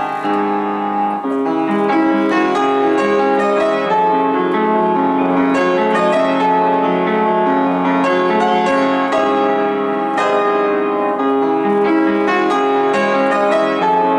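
Upright piano played live: a continuous, flowing passage of many notes and chords at an even loudness.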